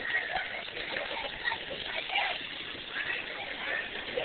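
Steady hiss of a playground splash-pad sprinkler spraying water, with faint children's voices in the background.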